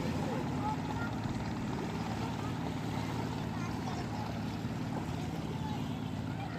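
A steady, low engine drone that does not change, with faint voices in the background.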